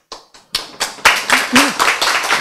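Audience clapping, starting about half a second in and carrying on, with a voice briefly heard over it.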